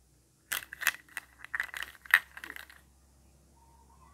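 Hollow plastic toy ice cream cones clattering against each other in a hand: a quick run of light, clicky knocks over about two seconds, starting half a second in, loudest near the end of the run.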